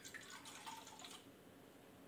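A mouthful of rinsing water spat into a cup: a short, faint splash and trickle lasting about a second.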